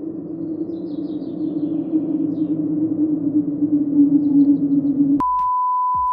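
A low, steady humming drone, edited in as a sound effect, that sags slightly in pitch while it grows louder. About five seconds in it cuts off abruptly into a steady high test-tone beep, the kind played with a TV colour-bar test pattern.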